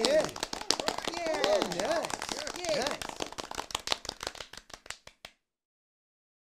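Clapping with short high cheering voices, the claps thinning out and the whole sound stopping about five seconds in.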